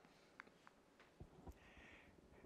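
Near silence: lecture-hall room tone with a few faint, brief clicks.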